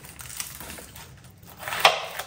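Serrated kitchen knife cutting into an onion on a plastic cutting board: a few light crackles of onion skin, then one sharp crunch as the blade goes through near the end.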